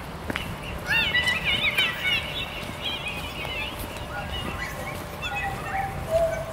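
Birds chirping: a burst of quick, rising-and-falling warbling calls about a second in, then scattered single chirps, over a low steady rumble.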